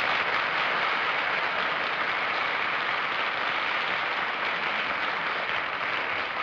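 Studio audience applauding: steady, even clapping that eases off slightly near the end.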